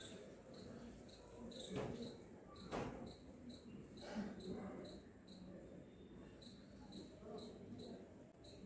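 A cricket chirping in short, evenly spaced pulses, about two to three a second. A few brief louder swishes come about two, three and four seconds in, as hands work over wet skin.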